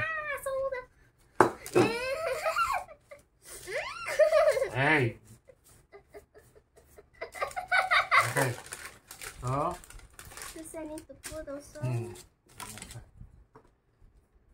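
An adult and a young girl talking and laughing, the girl giggling; a single sharp knock about a second and a half in.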